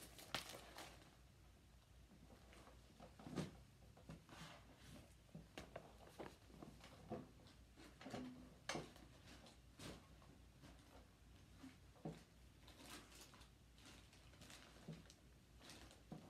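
Faint off-screen digging: scattered soft knocks, taps and rustles of someone rummaging through stored items, with a slightly louder knock about three seconds in, over quiet room tone.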